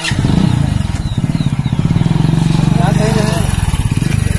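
Motorcycle engine starting up abruptly close by and running steadily with a rapid, even putter.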